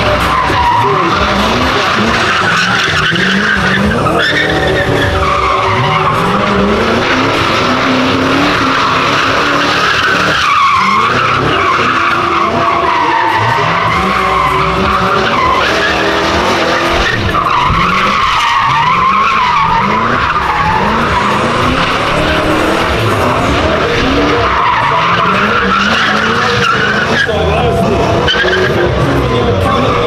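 Fox-body Ford Mustang drifting: the engine revs up again and again, every second or two, under a continuous tyre squeal that wavers up and down in pitch.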